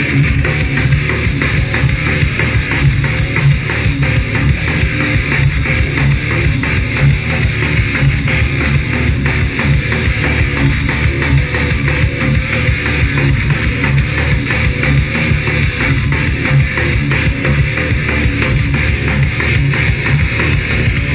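A live rock band playing loudly through PA speakers: guitars over a drum kit, with a steady fast beat.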